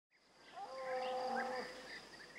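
A farm animal's call, one steady held note lasting about a second, over outdoor rural ambience with short bird chirps and a faint steady high-pitched tone.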